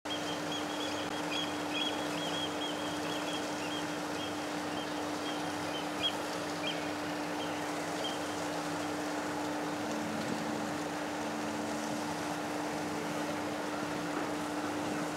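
A cruise ship's steady low hum carrying across the water under a steady outdoor hiss. Small bird chirps come and go over the first half.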